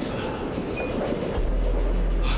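Steady rumble of a train carriage on the move, from a drama soundtrack. A deep low hum comes in about a second and a half in and holds.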